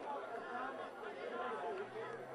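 Indistinct voices of rugby league players and onlookers calling out and chattering over one another.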